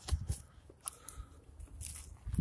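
Faint crunching and scuffing on dry dirt and burnt debris, with a few short clicks over a low rumble.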